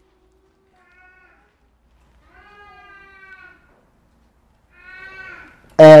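Three faint, drawn-out high-pitched calls in a quiet room, each a second or so long, the middle one the longest.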